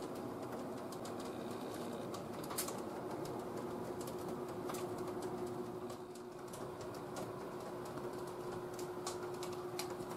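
Steady hum of a ventilation fan with one steady pitched tone through it, and scattered faint clicks and ticks.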